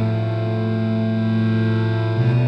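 Background music: a guitar played through effects, holding one steady low note that moves to a slightly higher note just before the end.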